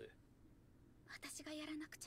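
Faint, quiet dialogue from an anime episode: after about a second of near silence, a short spoken phrase comes in.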